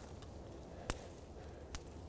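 Two crisp snaps of small dry dead twigs broken off a branch by hand, a little under a second apart. A clean snap rather than a bend is the sign that the twigs are dry enough to use as kindling.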